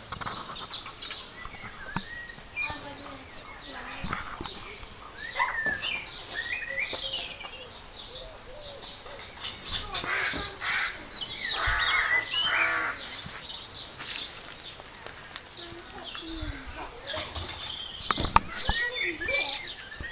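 Small birds chirping and singing on and off, with a child's voice calling out faintly around the middle and a few sharp knocks near the end.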